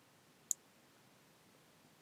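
A single short, sharp click about half a second in, from multimeter test probes being set on a circuit board; otherwise near silence.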